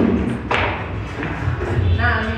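A pool cue striking the cue ball once, a single sharp knock about a quarter of the way in, over background music with a steady bass.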